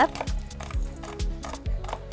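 Knife chopping toasted almonds on a wooden cutting board: a run of uneven knocks, over soft background music.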